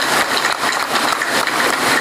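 A steady, loud hiss of noise with no clear tone or rhythm, the background of a noisy broadcast recording heard between spoken phrases.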